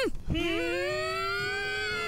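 A voice holding one long nasal "hmmm" that starts a moment in and slowly rises in pitch. It follows a run of short, rising-and-falling "hmm" sounds.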